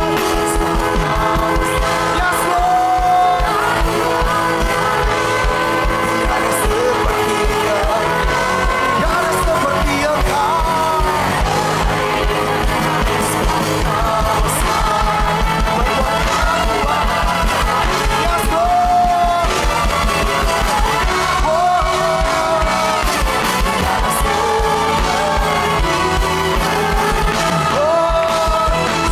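Live worship band playing an upbeat song over a steady fast drum beat, with a group of voices singing the melody.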